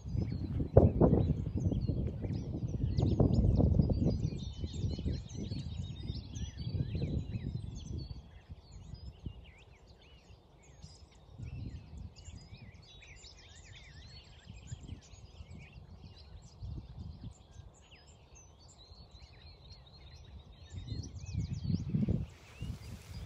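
Several birds singing and chirping, with short calls and trills throughout. Under them runs a low rumble on the microphone that is heaviest for the first eight seconds and then eases.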